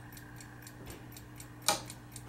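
Faint, fast, even ticking of the Sargent & Greenleaf Model #4 time lock's clock movement, about six ticks a second, with one sharper click near the end from the combination lock's works.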